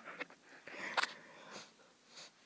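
A faint breath close to the microphone, with a soft click about a second in.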